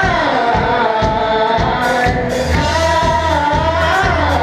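A live band playing loud: a singer holds long, wavering notes over drums and cymbals, and a low pulsing bass note comes in about halfway through.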